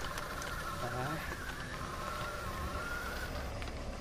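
Electric skateboard's motor whining at a steady pitch as it rolls over rough dirt, with the low rumble of its tyres. The whine fades out a little over three seconds in.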